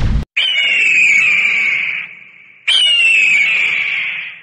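Hawk screech, twice: each scream starts high, falls in pitch, then holds and fades, the first about a third of a second in and the second just under three seconds in.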